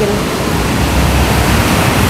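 A loud, steady rushing noise with a low rumble beneath it, with no clear rhythm or tone.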